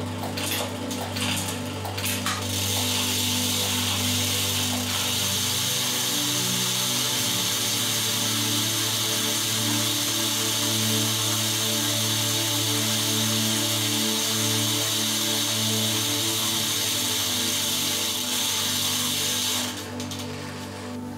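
Bicycle drivetrain spun by hand in a repair stand: a steady, high whirring hiss of the chain running over the chainrings and cassette. It starts about two seconds in and cuts off just before the end.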